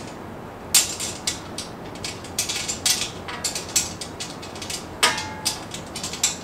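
Small metal fittings clicking and tapping against a porcelain-enamelled steel grill lid as its handle is bolted on: a run of sharp clicks, with one louder knock about five seconds in that leaves the lid briefly ringing.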